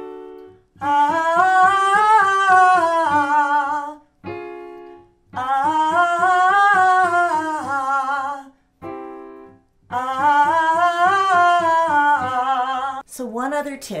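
A woman sings a vocal warm-up scale on an open 'ah', rising and falling in pitch, three times over. Each run is preceded by a short keyboard chord that gives the starting pitch.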